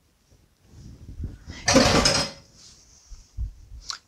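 Liquid yeast mixture poured and scraped out of a glass bowl into a stainless-steel mixing bowl of flour. There is a short loud rush of noise about two seconds in and a low thump near the end.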